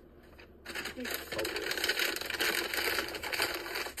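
A paper fast-food bag rustling and crinkling as it is handled, starting under a second in and carrying on steadily with many small crackles.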